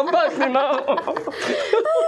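A woman and a man chuckling and laughing together, mixed with bits of speech.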